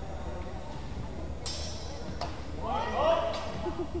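Steel longswords clashing twice, sharp strikes with a brief ring about a second and a half and two seconds in. Then voices ring out around three seconds in, the loudest moment.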